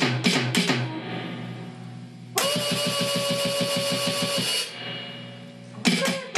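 Yamaha DD-5 digital drum pad played with sticks: a quick electronic drum beat stops just under a second in. After a pause, a loud sustained electronic tone with a fast pulse under it sounds for about two seconds. The drum beat resumes near the end.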